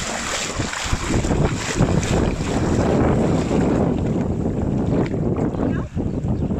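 Shallow water splashing and sloshing as a German shepherd paws and digs at the bottom, with wind buffeting the microphone.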